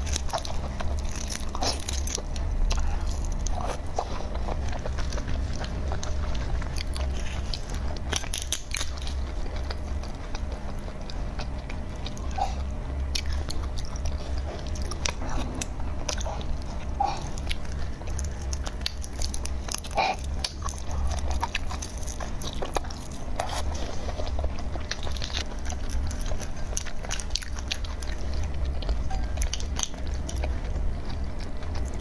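Close-miked eating of red shrimp by hand: sucking at the heads, peeling the shells and chewing, heard as many small irregular clicks and smacks over a steady low hum.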